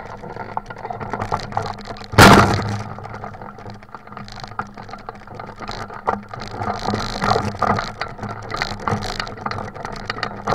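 Icaro 2000 RX2 hang glider's aluminium frame and control-bar wheels rattling and clicking as the glider is walked over rough ground, with one loud knock about two seconds in.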